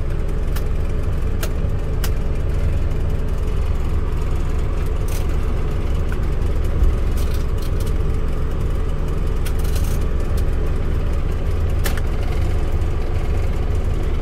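Suzuki Alto's 1000 cc petrol engine idling steadily with the air conditioning switched on, heard from inside the cabin together with the AC blower fan. A few light clicks come from the AC control knobs being turned.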